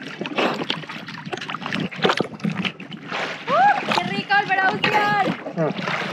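Sea water splashing and sloshing against an action camera at the surface. A person's voice calls out in the middle, rising sharply in pitch at first.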